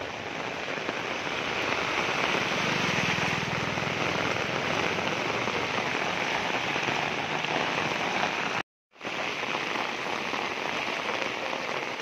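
Heavy rain falling steadily, an even hiss of rain on wet ground and water. The sound drops out completely for a moment about nine seconds in.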